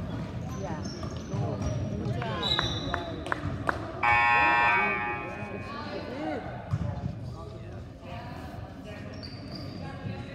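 A gymnasium scoreboard buzzer sounds once, steadily, for about a second, some four seconds in; it is the loudest thing here. Before it, a basketball bounces, sneakers squeak on the hardwood and a short referee's whistle sounds, all over crowd chatter.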